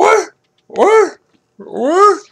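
A dog vocalising in three short whining, yowling calls, each rising then falling in pitch, the last one longer with a slow rise. This is a dog asking to be let out to relieve herself.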